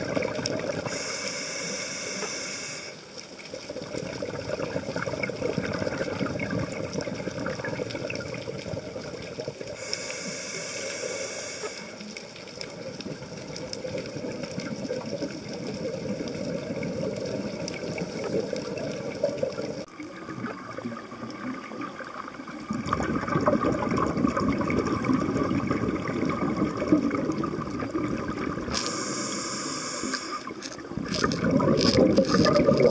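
Underwater ambience picked up by a diver's camera: a steady low rush of water, broken three times by a couple of seconds of hissing, bubbling scuba exhalation, about a second in, about ten seconds in and near the end.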